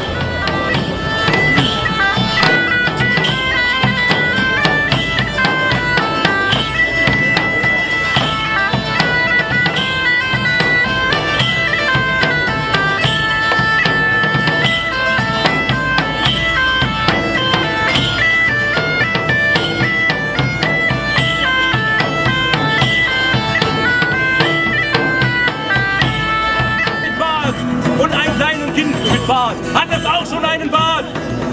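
Medieval bagpipes playing a lively stepping melody over a large hand drum and a plucked lute-type string instrument. Near the end the bagpipe melody stops.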